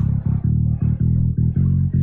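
Bass guitar sound from an FL Studio beat playing on its own: a run of short low notes, about four a second.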